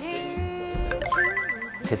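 A short electronic musical sound effect: a steady held note, joined about a second in by a higher, bright ringing figure.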